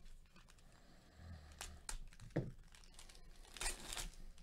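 Plastic wrapper of a Panini Select baseball card pack being torn open and crinkled by hand: a few sharp crackles in the middle, then a louder rustle near the end.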